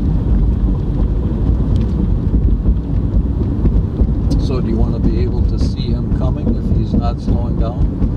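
Car interior noise while driving: a steady low engine and road rumble heard from inside the cabin.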